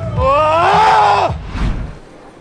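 A man's drawn-out vocal shout lasting about a second, rising and then falling in pitch, over background music.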